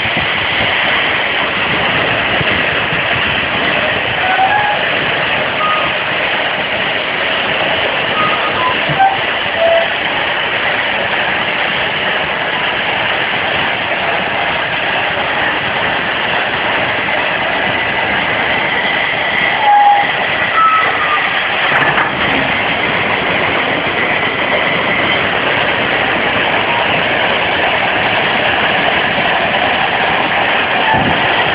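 Compressed-air-driven railway turntable running, a steady loud hissing rush as it swings a steam locomotive around, with a few brief high squeaks scattered through.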